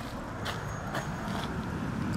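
Steady outdoor background noise with a few faint clicks.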